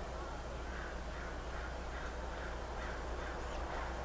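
A bird calling faintly in a run of short repeated calls, about two a second, over a steady background hum.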